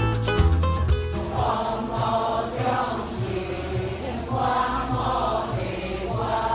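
Background music with a strong bass fades during the first second, giving way to a group of worshippers chanting together from books in long, wavering sung phrases.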